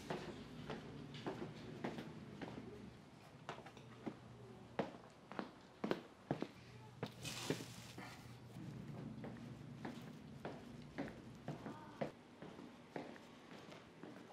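Faint footsteps and handling knocks, soft and irregular, with a brief rustle of hay about seven seconds in.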